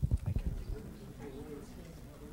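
Soft, uneven low thumps and knocks for about the first second, typical of a handheld microphone being handled as it is passed, then faint distant voices murmuring.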